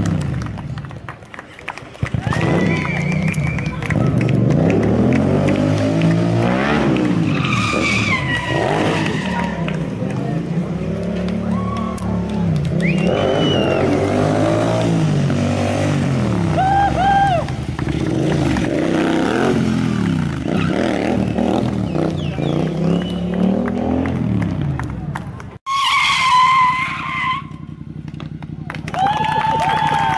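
Stunt motorcycle's engine revving up and down again and again in long swells as it is ridden through wheelies and spins, with tyre squeal. The engine sound cuts off abruptly near the end.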